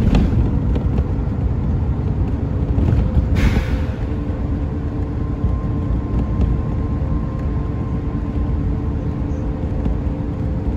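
Steady road and engine rumble heard from inside a moving vehicle, with a faint steady whine over it and a brief hiss about three and a half seconds in.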